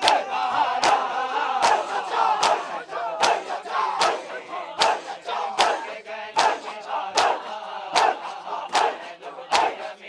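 Matam: a crowd of mourners beating their chests in unison with open palms, the slaps landing together at an even beat of a little over one a second, while many men's voices chant along.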